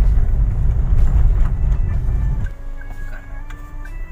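Low, steady rumble of a 2016 Toyota Avanza Veloz 1.5 automatic on the move, heard from inside the cabin. It cuts off sharply about two and a half seconds in, leaving faint music with held notes.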